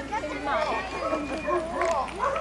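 Shetland sheepdog barking while running an agility course, over people's voices.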